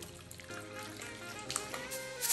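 Chicken pieces being stirred through a thick marinade with a spoon in a glass bowl, giving soft wet mixing sounds under steady background music.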